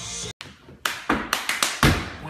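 Music cuts off abruptly about a third of a second in. Then comes a quick cup-song rhythm of hand claps and mugs struck on a wooden floor: about six sharp strikes in one second, the last the loudest.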